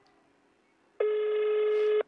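Mobile phone on loudspeaker playing a call ringing tone while an outgoing call waits to be answered: one steady tone about a second long, starting halfway through and cutting off sharply.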